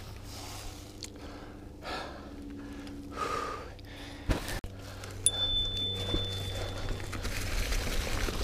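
A mountain biker breathing hard and gasping. About halfway through there is a sharp knock as a gloved hand comes up against the helmet camera.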